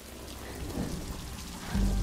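A steady hiss, joined near the end by a deep, steady low rumble that grows louder.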